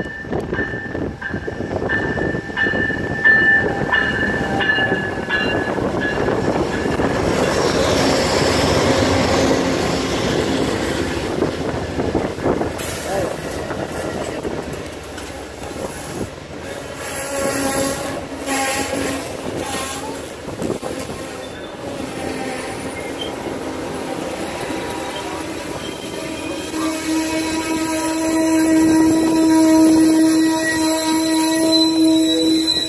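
Amtrak passenger train pulling into a station: the diesel locomotives rumble past close by, then the Superliner cars roll by and slow to a stop. Steady high squeals from the wheels and brakes come and go in the second half, with a strong steady squeal near the end as the train stops.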